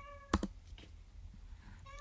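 A brief high-pitched call, rising in pitch, fades out right at the start; a third of a second in comes a single sharp click, then only faint room tone.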